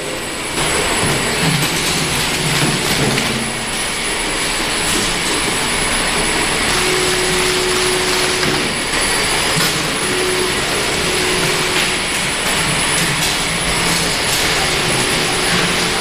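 Packaging-line machinery running: a tub conveyor and a labelling machine making a steady, loud whirring noise with a constant thin high whine. A short low hum comes and goes a few times midway.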